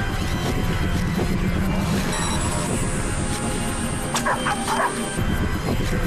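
A dog barking a few times in quick succession about four seconds in, over a steady soundtrack music bed. A thin, high steady whine runs for about three seconds around the barks.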